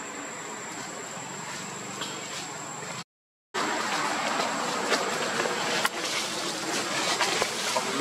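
Steady outdoor background hiss with a thin high tone, cut off by a half-second dropout about three seconds in. After it comes louder rustling and crackling of dry leaf litter, with scattered sharp clicks, as a macaque walks over the leaves.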